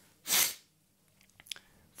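A single short sneeze, about a third of a second long, near the start, followed by quiet with a couple of faint clicks.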